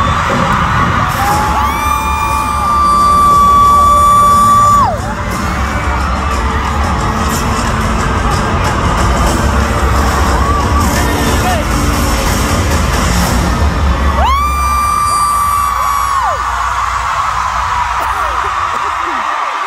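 Concert music through a hall's PA with a heavy bass beat and crowd cheering. A fan close to the phone lets out two long, high-pitched screams, the first about two seconds in and the loudest, the second about fourteen seconds in, each falling away at the end. The bass drops out just before the second scream.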